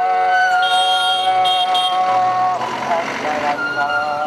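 Islamic call to prayer (azaan): a man's voice chanting in long, held melodic notes. One note slides up into pitch and is held for over two seconds, there is a short wavering run a little after the middle, and then the next long note begins.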